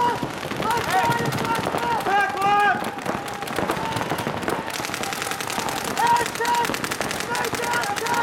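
Paintball markers firing in rapid strings of many shots a second, heaviest from about three seconds in.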